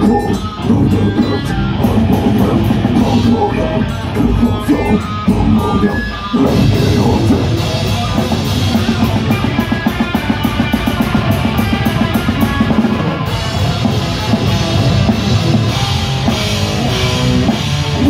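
Live death metal band playing loud: distorted guitars and drum kit. About six seconds in the music drops out briefly, then the full band comes back in with fast, even drumming.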